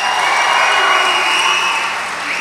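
An audience applauding and cheering: steady, dense clapping that eases off slightly near the end, with a faint steady high tone running through it.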